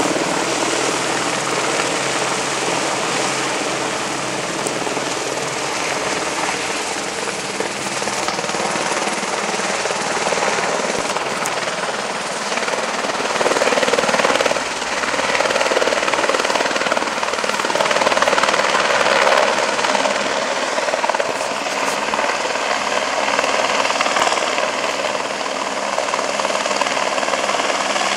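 Helicopter flying over with a load of cement hanging from a long sling line: a steady rotor and engine noise that grows louder and eases off a little as it passes.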